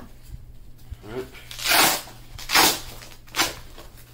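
Velcro fastener on a plate carrier's plate pocket being ripped open in three short tears, a little under a second apart.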